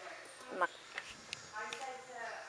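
Quiet sounds: a short rising vocal sound about half a second in, then a few light sharp clicks, and a brief murmur near the end.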